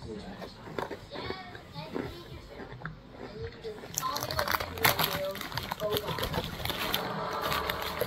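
Clear plastic wrapper on a sleeve of biscuits crinkling as it is handled, starting about halfway through, after a few faint spoken words.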